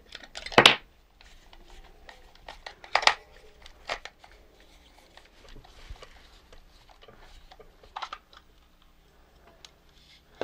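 Handling noises from taking apart a plastic toy robot. There is a clatter just after the start, then scattered clicks and knocks as a screwdriver works its screws and the plastic shell is pried open.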